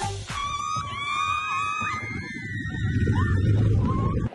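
Riders screaming on a wooden roller coaster: several long, held screams over the first half. After them comes a low rumble of wind buffeting the microphone and the ride running, which grows loudest near the end.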